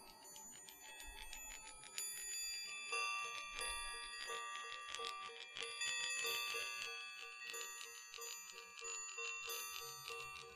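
A pair of metal Baoding balls with chimes inside, turned in the fingers close to the microphone: the balls ring with several overlapping high tones, with light clicks as they touch. The ringing grows louder about three seconds in and pulses softly a few times a second.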